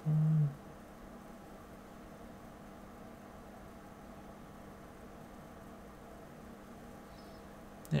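A man's short, low, steady 'hmm' hum right at the start, then only a faint steady background hum of room tone.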